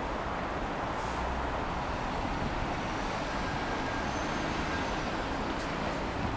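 Steady city traffic noise: an even rumble and hiss with no distinct events.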